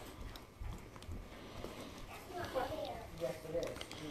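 Quiet shuffling and light knocks of basset hound puppies moving about in wood shavings as they are petted, with a faint voice in the background from about halfway through.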